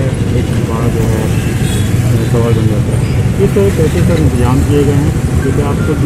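People talking at a roadside over a steady low rumble of street traffic.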